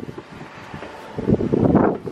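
Wind on the microphone, with a louder burst of noise starting a little after one second in and lasting most of a second.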